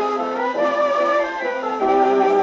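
A 1927 dance-band 78 rpm record playing on an acoustic phonograph: an instrumental passage with a melody line moving over the band's sustained chords. It gets a little louder near the end.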